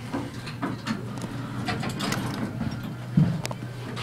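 Inside a Westinghouse traction elevator car: a steady low hum with a run of irregular mechanical clicks and rattles, and one louder thump about three seconds in.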